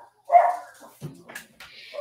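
A pet dog barking once loudly about a third of a second in, followed by fainter sounds, set off by someone coming in the door.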